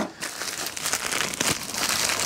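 Padded mailing envelope crinkling steadily as it is handled and worked at to get it open.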